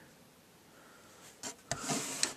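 Near silence for about a second, then faint handling noise: a sharp click and brief rubbing as a hand and camera move against the guitar's wooden body.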